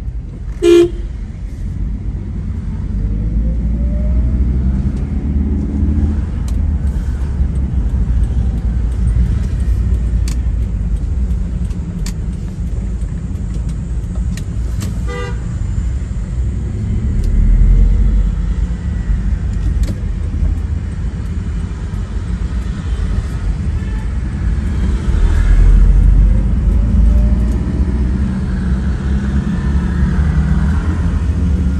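Engine and road noise from a car driving in town traffic, a steady low rumble with the engine note rising twice as it speeds up. A short vehicle horn toot sounds about a second in.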